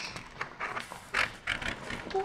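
Plastic paint comb dragged through thick wet paint on paper: several short, uneven scraping strokes.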